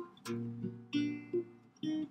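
Archtop jazz guitar playing a short phrase of four or five chords, each struck and left to ring briefly before the next.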